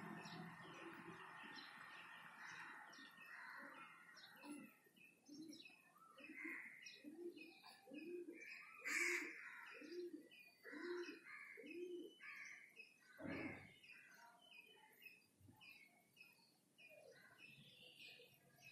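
Faint birdsong: a run of low, evenly spaced cooing notes, with thin high chirps scattered throughout. A single knock sounds about 13 seconds in.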